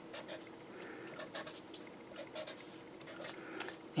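Felt-tip Sharpie marker scratching on paper in a series of short, faint strokes as lines are drawn.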